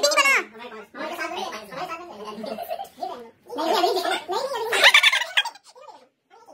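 Animated voices of several people, in bursts with short gaps, their pitch wavering up and down; the loudest stretch comes about four to five seconds in.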